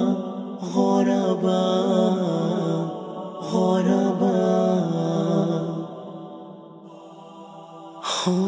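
Wordless chanted vocals of a nasheed: several voices holding and sliding between sustained notes over a low held hum. The chant drops away to a quiet tail about six seconds in.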